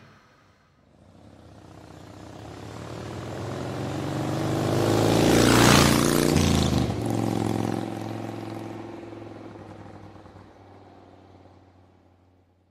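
Vehicle pass-by sound effect: an engine grows steadily louder for about five seconds and peaks a little before the middle with a rush of noise. Its pitch then drops as it goes past, and it fades away.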